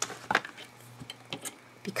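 A few light clicks and knocks of paper and craft tools (scissors, steel rulers) being handled on a cutting mat.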